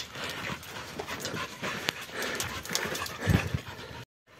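A dog panting, with irregular footsteps and scuffs on stony, gravelly ground and a louder low thump near the end.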